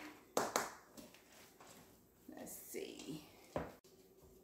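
Gloved hands kneading a ground Beyond Beef mixture in a stainless steel bowl, with two sharp knocks about half a second in and another near the end.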